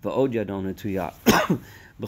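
A man speaking, broken about a second and a half in by a single short, loud cough.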